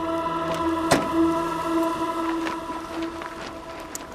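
Background score: a sustained, droning chord, with a single sharp knock about a second in, a car door being shut.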